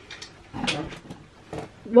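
A few faint, short clicks and taps from handling a plastic GraviTrax magnetic cannon piece and its balls in the hands.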